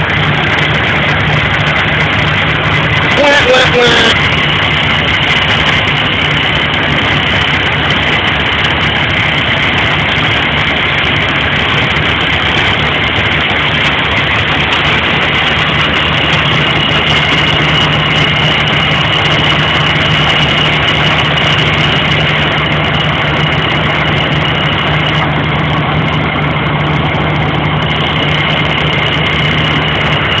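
A vehicle engine idling, a steady unbroken hum.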